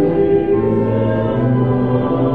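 Slow church hymn sung in long held notes, voices with organ accompaniment, the notes changing about once a second.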